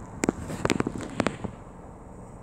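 A quick run of sharp clicks and knocks over about a second, over the steady low sound of the car's engine idling.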